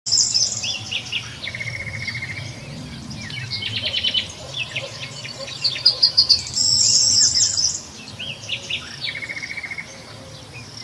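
Wild birds calling: a busy mix of short chirps and quick whistled sweeps, with rapid buzzy trills. The loudest passage is a high, fast trill a little after the middle.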